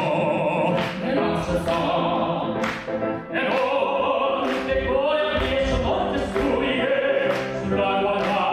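Operatic male singing with grand piano accompaniment: a bass voice sings first, then a tenor takes over, both amplified through handheld microphones.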